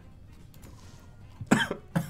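A man coughing, two sharp coughs close together about a second and a half in, after a quiet stretch.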